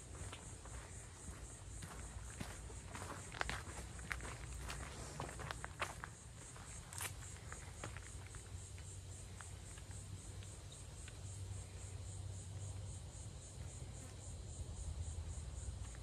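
Steady, high, pulsing chorus of insects. In the first half it is joined by footsteps crunching on a sandy dirt trail; the footsteps stop about halfway through.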